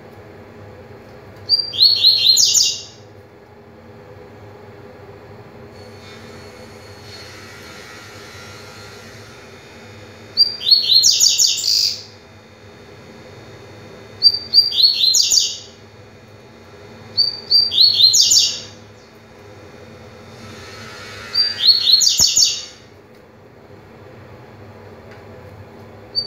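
Male double-collared seedeater (coleiro) singing its fast 'tui tui' song: five short phrases of rapid repeated high notes, each about a second long, several seconds apart.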